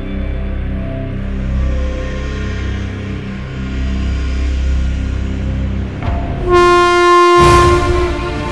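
Cinematic soundtrack music: a low sustained drone, then near the end a loud held horn-like note that breaks off into a hit.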